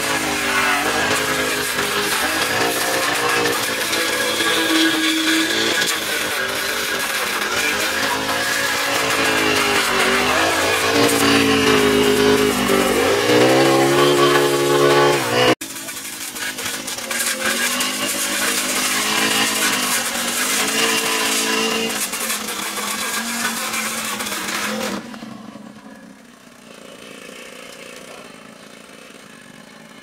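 Backpack brush cutter's small engine running under cutting load, its pitch rising and falling as the cutting head swings through dry grass. The sound breaks off abruptly about halfway through and resumes, then turns fainter in the last few seconds.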